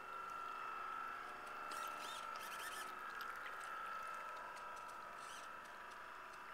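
Faint, steady high whine of an RC model lobster boat's electric drive motor as the boat runs across the water, with a few brief squeaky chirps about two seconds in.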